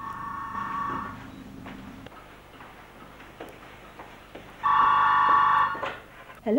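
Cordless telephone's electronic ring sounding twice: a fainter ring lasting about a second at the start, then a louder ring of just over a second about five seconds in.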